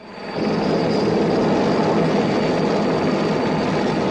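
Vertol H-21C tandem-rotor helicopter with its Wright R-1820 radial piston engine, running in flight. Its engine and rotor noise fades in from silence over the first half second, then holds steady and loud.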